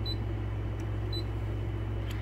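Two short, high beeps from the Brother ScanNCut DX SDX225 cutting machine's touchscreen as its menu is worked, one at the start and one about a second in, over a steady low hum.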